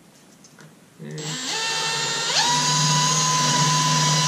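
Cordless drill driving a small hole saw into the wall of a plastic bucket. The motor starts about a second in, winds up to a higher speed a second later, then runs steady.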